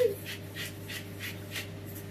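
Hand-held salt grinder twisted over a frying pan: a quick, even run of dry grinding strokes, about five a second.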